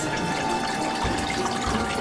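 Steady running and bubbling of water circulating in a planted aquarium.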